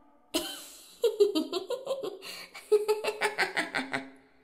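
A creepy little girl's voice giggling: a sharp breath at the start, then two runs of quick, rhythmic "ha-ha" laughter with a short break between them.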